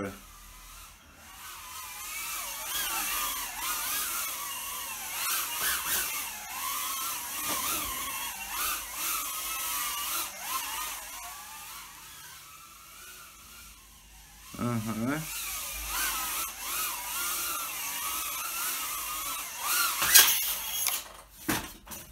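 Mobula 8 micro FPV drone's brushless motors and propellers whining in flight, the pitch rising and falling with the throttle. Near the end come a few sharp knocks, and the motors stop.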